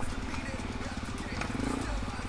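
Single-cylinder four-stroke dirt bike engine running at low revs, chugging steadily, picking up a little near the end.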